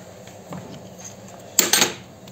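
Steel chuck key being used to tighten a three-jaw lathe chuck on a rusty steel pipe: faint handling, then a short loud metallic clatter about a second and a half in as the key comes out of the chuck.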